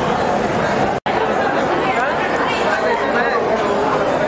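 A crowd's chatter: many voices talking at once with no single clear speaker, broken by a momentary dropout to silence about a second in.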